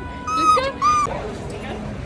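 A dog whining twice: two short, high-pitched whines about half a second apart, each holding one pitch and dropping at the end.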